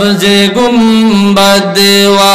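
A man singing a naat, an Islamic devotional song, solo into a microphone. He draws out long, wavering notes, with two short breaths between phrases.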